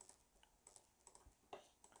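Near silence with a few faint, scattered clicks of computer keys, the clearest about one and a half seconds in.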